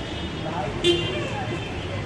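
Busy street noise: crowd chatter over traffic, with one short, sharp, high-pitched sound just before a second in.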